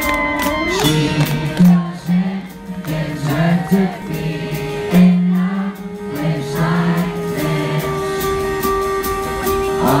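Pop-punk band playing live with singing over a steady drum beat and bass line.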